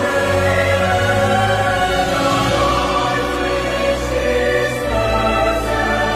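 Devotional choral music: sustained choir voices without clear words over a steady instrumental accompaniment with a low bass line.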